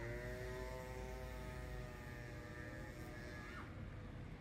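A passing motor vehicle's engine, its pitch climbing as it accelerates, then holding level and fading away about three seconds in, over a steady low traffic rumble.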